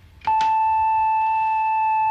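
Moog synthesizer oscillator sounding a sine wave: one steady, smooth, flute-like high tone that starts about a quarter second in and holds at an unchanging pitch.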